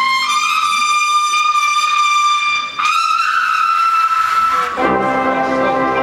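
Marching trumpets hold a long high note, break off briefly, then hold a second, slightly higher note. About five seconds in, the drum corps' lower brass come in beneath them with a loud, full sustained chord.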